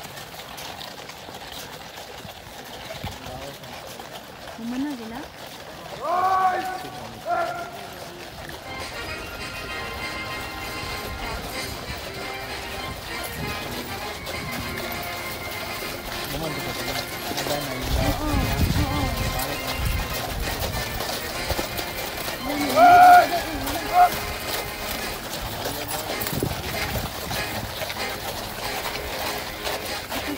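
Hooves of a troop of cavalry horses walking on a sandy parade ground, with crowd chatter. Two loud calls stand out, about six and twenty-three seconds in, and music plays from about nine seconds on.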